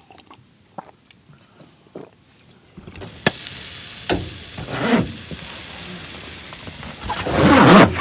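Quiet for about three seconds with a few faint clicks, then skewered chicken hearts sizzling steadily on a charcoal yakitori grill, with a few sharp crackles and a louder swell of noise near the end.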